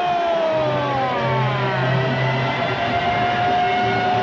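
Arena goal horn sounding to mark a goal, one long, loud, sustained tone whose pitch sags about a second in and climbs back, over a cheering crowd.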